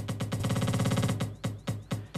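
Electronic dance track playing as a beat-synced loop in DJ software. The loop length is changed on the fly, so for about a second the beat turns into a rapid stutter of very short repeats, then falls back to the normal beat.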